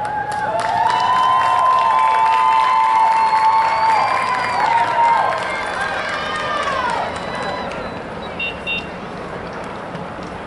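Stadium crowd cheering and whooping, with scattered applause and several long, high "woo" calls that die away about seven seconds in. Two brief high peeps sound near the end.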